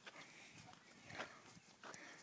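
Near silence, with a few faint short clicks, the loudest a little over a second in.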